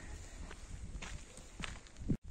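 Quick footsteps of a person walking briskly on an unpaved dirt-and-gravel road, with a low rumble of handling noise underneath.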